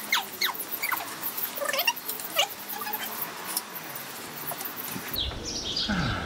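Rapid, scratchy scrubbing of a brush on a bicycle hub's sprocket, cleaning off rust and grime, with a few short falling squeaks in the first half; the scrubbing stops near the end.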